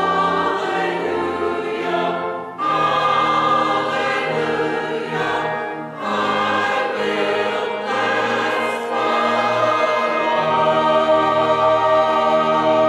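Small church choir of mixed voices singing an anthem in harmony, holding long notes, with brief breaks between phrases about two and a half and six seconds in.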